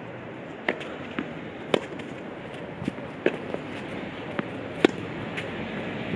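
Tennis rally on a clay court: sharp strikes of racket on ball and ball bounces, the loudest about every one and a half seconds, over a steady hiss.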